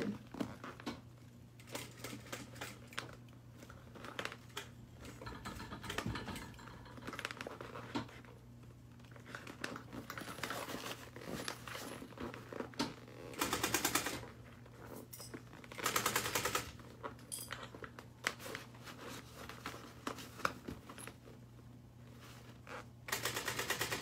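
Industrial sewing machine stitching in three short bursts of rapid needle clicks, one a little past halfway, another soon after, and the last near the end, through the thick layers of a fabric bag. Quieter fabric handling comes between the bursts.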